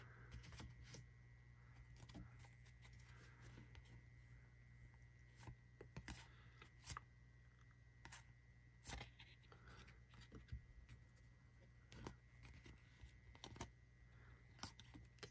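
Faint, scattered clicks and rustles of a stack of Panini NBA Hoops trading cards being slid and flipped through by hand, one card after another, over a low steady hum.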